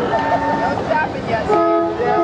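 A multi-note horn sounding a held chord in two blasts, a shorter one at the start and a longer one from about halfway through, over crowd chatter.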